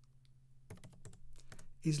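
Typing on a computer keyboard: a short run of soft key clicks starting a little under a second in.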